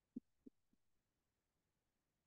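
Near silence, broken by two or three faint, short, soft thumps within the first second.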